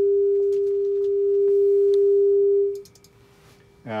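Steady mid-pitched sine-wave test tone driving a guitar amplifier on the test bench, clean with no overtones. It cuts off suddenly about three seconds in, leaving only a faint trace of the tone.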